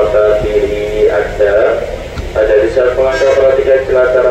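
Station public-address loudspeaker playing a spoken announcement. The voice sounds thin, with no bass, and the talk pauses briefly about two seconds in.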